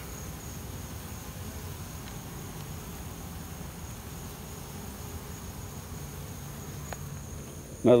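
A mass of honeybees from a captured swarm buzzing steadily in a low, even hum, with a faint steady high-pitched tone above it.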